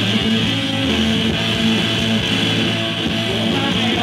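Live rock band playing an instrumental passage with no vocals: electric guitars and bass guitar play steady, loud chords.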